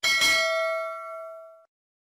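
A single bell 'ding' sound effect: one bright bell strike that rings and fades over about a second and a half, then cuts off abruptly. It sounds as the notification-bell icon is clicked in a subscribe animation.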